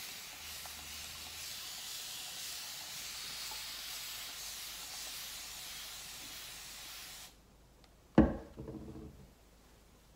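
Continuous-mist spray bottle of water spraying onto hair in one long, steady hiss that cuts off abruptly after about seven seconds. About a second later comes a single sharp knock, the loudest sound, with a brief ring.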